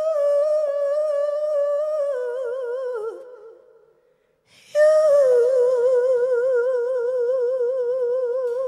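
A woman's solo voice, hummed with closed lips, in a high held note with wide vibrato. The note steps down and fades out about three seconds in. After a brief silence a new long note starts about five seconds in, slides down a little and is held with steady vibrato.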